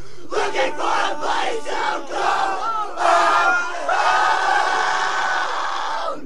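A crowd of people yelling and shouting together in loud surges, with some long held yells, cutting off abruptly at the end.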